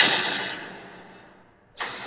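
Title-card sound effect: a sudden loud burst of noise that fades away over about a second and a half, then a second noise swells in just before the end.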